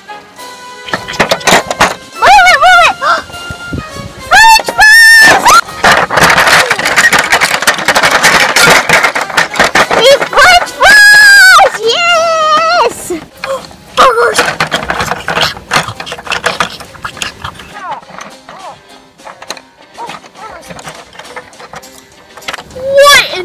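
Loud, high-pitched wavering squeals, three or four of them, over a noisy stretch of clatter as plastic toy furniture and figures are knocked over, with background music.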